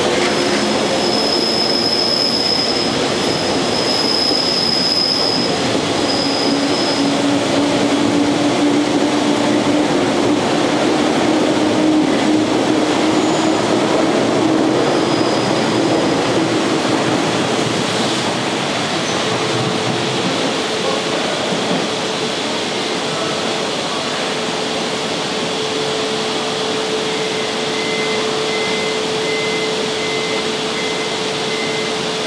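JR 185 series resistance-controlled electric train pulling out and rolling past along the platform: a steady rumble of wheels on rail, with a thin high-pitched wheel squeal over the first several seconds. The sound eases a little after about twenty seconds.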